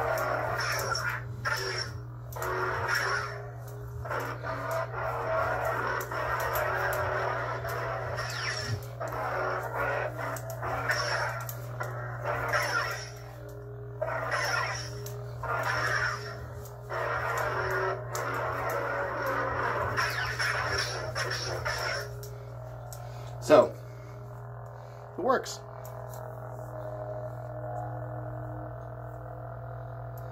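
Lightsaber smoothswing soundboard playing its sound font (the General Kenobi font): a steady low hum with swelling, sweeping swing sounds as the blade is swung back and forth. The swinging stops about two-thirds of the way through, leaving the hum alone, broken by two sudden loud sounds a second or two apart.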